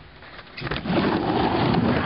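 Skateboard wheels rolling on a wooden mini ramp, a rumbling noise that swells about a second in.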